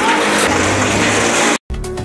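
Demolition by heavy machinery: a wheel loader's diesel engine running under a dense noise of debris and rubble being pushed and dropped, cut off abruptly about one and a half seconds in. Electronic music with a steady beat starts right after the cut.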